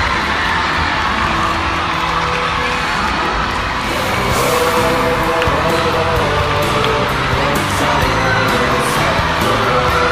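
A gym full of schoolchildren cheering and shouting excitedly, mixed with background music.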